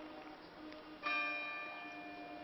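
A church bell struck once about a second in, ringing on and slowly fading, over the faint hum of an earlier stroke.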